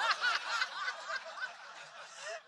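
Audience laughing, many voices together, dying away over the two seconds.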